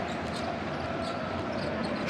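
Basketball being dribbled on a hardwood court, with the steady murmur of an arena crowd around it.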